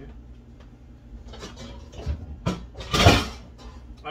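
Rummaging in a low kitchen cabinet for cookware: a cupboard door and a few scattered knocks, then one loud clatter of metal pots about three seconds in as a stainless steel pot is pulled out.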